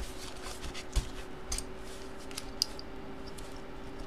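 A stack of paper envelopes being handled: light rustling and crinkling, with a few sharp taps and knocks, the strongest right at the start and about a second in.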